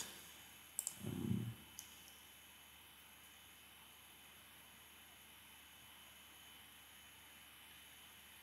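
Faint room tone, almost silent, broken early by two soft computer mouse clicks about a second apart, with a brief low hum of voice between them.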